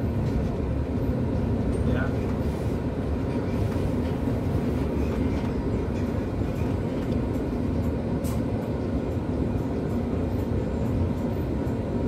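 Steady low rumble of a London double-decker bus heard from inside the upper deck, the engine and body running as the bus draws up to red traffic lights.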